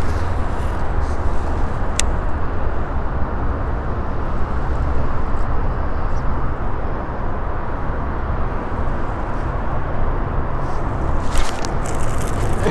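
Steady low rumble of highway traffic on the overpasses overhead, with a single sharp click about two seconds in.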